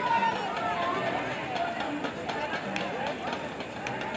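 Several voices calling out and shouting over one another across an open sports field, with no single clear speaker.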